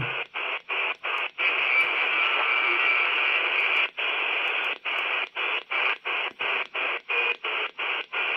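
Receiver hiss with no signals from an HF-modified Quansheng UV-K6 handheld's speaker, tuned across the 20-metre amateur band. The hiss cuts out briefly again and again as the frequency is stepped: several times in the first second or so, then steadily for a couple of seconds, then about two or three gaps a second through the second half.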